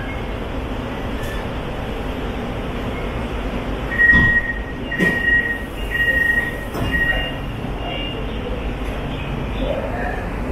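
Door chime of a Hyundai Rotem metro car: four short two-note beeps about a second apart as the passenger doors open at a station, with a knock as they start, over the steady hum of the stopped car.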